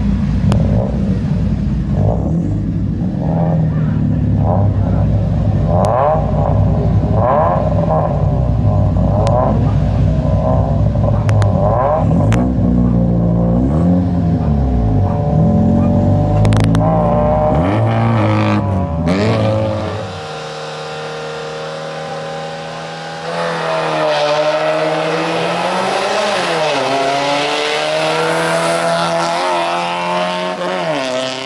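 Small Gruppo RS slalom hatchback's engine heard close by while stationary, idling with quick throttle blips about once a second, then longer rev rises and falls. After a sudden drop in level about two-thirds in, the car is heard driving the course under hard acceleration, its engine rising and dipping in pitch through the gear changes.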